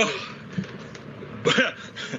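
A man's voice in two short bursts, one right at the start and one about a second and a half in, over a steady background hiss on the call line.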